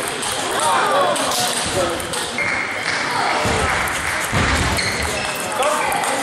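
Table tennis rally: the ball clicking off bats and table in a quick exchange, over a steady hubbub of voices in a large echoing hall.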